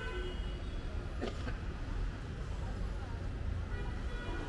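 Busy city street ambience: a steady low traffic rumble with faint voices in the background and a brief high squeak about a second in.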